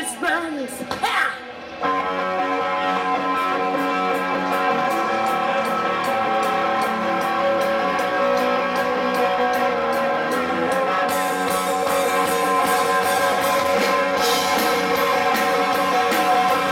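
Live rock band playing: a female voice sings over the first two seconds, then the full band comes in with electric guitars, bass and drums, loud and steady.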